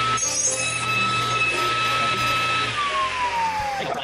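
Table saw running with no load, a steady whine over a low hum. About two and a half seconds in it is switched off and winds down, the whine sliding down in pitch as the blade coasts to a stop.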